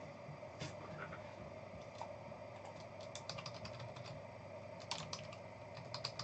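Faint typing on a computer keyboard: a few scattered key clicks, then quick runs of keystrokes in the middle and again near the end.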